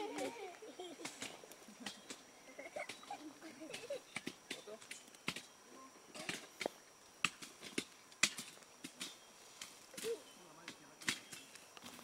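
Faint, distant voices of people talking, with scattered sharp clicks and taps throughout.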